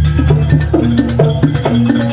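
Live jaranan ensemble music: pitched metal gong-chimes struck in a fast repeating pattern that rings on over a low sustained tone, with drum and percussion strokes.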